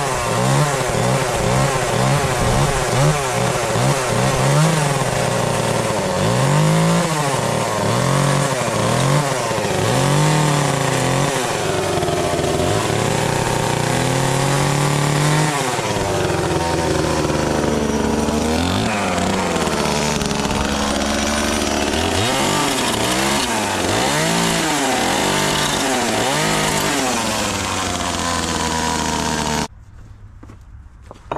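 Small chainsaw cutting into a hickory handle blank, revved up and let back down over and over as it makes a row of cuts. The engine pitch rises and falls about twice a second at first, then in slower, longer swells. The sound cuts off abruptly just before the end.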